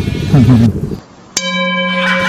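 A brief voice, a short moment of silence, then a bell-like chime sound effect that starts suddenly about a second and a half in and holds one steady tone, marking a cut to a meme clip.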